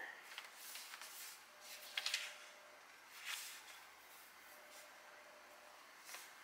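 Sheets of sublimation paper and butcher paper rustling and sliding under the hands as they are smoothed and shifted into place. A few faint, brief swishes, the loudest about two seconds in.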